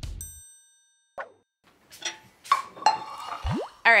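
A single bright, ringing ding just after the start that fades away over about a second. Then a short clatter of light knocks and tones with a quick rising glide, just before speech resumes.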